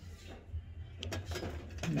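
Scattered light clicks and rattles of items being shifted around in a wire shopping cart, over a low steady hum.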